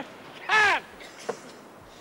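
A man's shouted parade-ground drill command: one short, sharp call that rises and falls in pitch, about half a second in, with a faint tap a little after a second.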